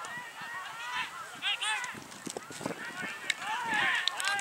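Players shouting to each other across the field during an Australian football match: a string of short, high, arching calls, loudest near the end.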